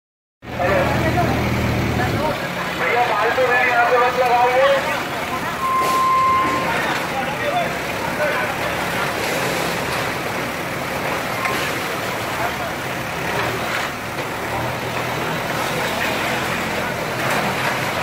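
JCB backhoe loader's diesel engine running, loudest at the start and again near the end, amid a crowd's voices and street noise. A short steady high tone sounds about six seconds in.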